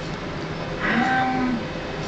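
A man's drawn-out hesitant "hmm", one hum that rises slightly and falls, about a second in and lasting under a second, over steady room noise.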